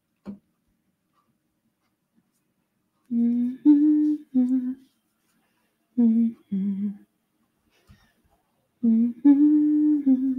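A woman humming with her mouth closed, in three short phrases of two or three held notes each, with silent gaps between them.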